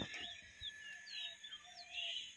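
Faint outdoor ambience: a few short bird chirps and whistles, some sliding up or down in pitch, over a steady faint high hiss.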